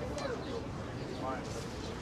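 Coffee-shop background ambience: indistinct chatter of several voices over a steady low room noise. A short sharp click comes about a quarter second in.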